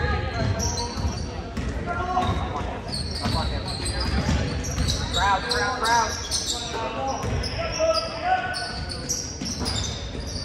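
Basketball being dribbled on a hardwood gym floor, with sneakers squeaking as players move up the court and crowd voices echoing in the large gym; a voice calls out about five seconds in.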